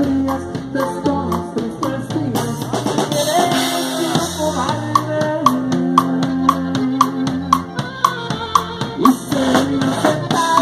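A live norteño-sax conjunto plays a medley. A drum kit keeps a steady beat, with sharp snare hits about twice a second over bass and bass drum. A long held melody note sounds in the middle.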